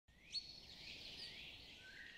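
Faint bird chirps, one short and sharper near the start, then a few softer whistled calls.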